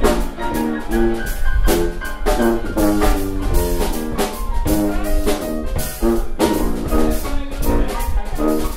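Traditional jazz rhythm section playing a chorus with the horns resting: piano chords over a sousaphone bass line and drums keeping a steady beat.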